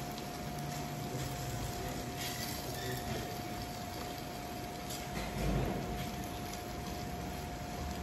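Silicone spatula stirring and scraping spiced potato stuffing in an aluminium kadai over a low flame, with short scrapes and a soft bump about five and a half seconds in. Under it runs a steady hum with a faint hiss.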